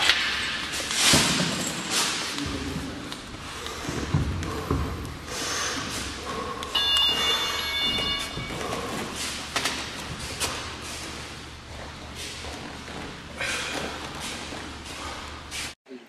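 Cage sparring: repeated thuds and knocks of bodies and gloves against the chain-link fence and padded posts, with voices in the gym and a brief high ringing tone about seven seconds in.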